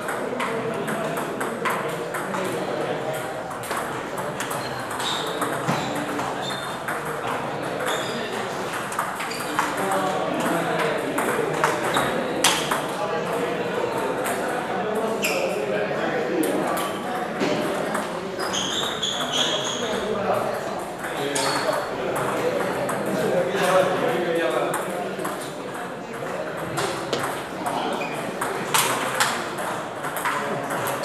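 Table tennis balls clicking off bats and tables in rallies, with taps coming from several tables at once, over a steady background of many voices talking.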